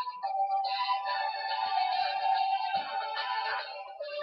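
Music played back from a voice memo recording through an iPhone 3GS speaker, held tones and chords that change every second or so.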